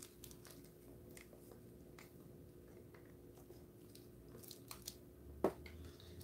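Faint scraping and light clicking of a wooden stir stick against a small plastic cup as tinted resin is scraped out, with a sharper tap about five and a half seconds in.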